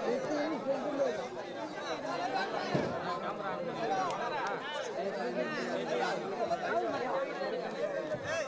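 Crowd chatter: many men's voices talking over one another at once, a continuous babble with no single voice standing out.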